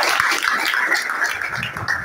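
A roomful of young men clapping and cheering, thinning out about one and a half seconds in.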